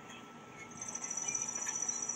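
A faint, high-pitched insect trill: a steady, rapidly pulsing buzz that comes in a little under a second in.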